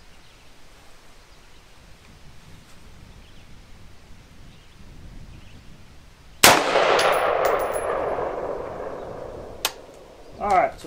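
A single shot from a Bear Creek Arsenal AR-15 in 5.56 about six and a half seconds in. The report rings out and fades over about three seconds. A sharp click follows about three seconds after the shot.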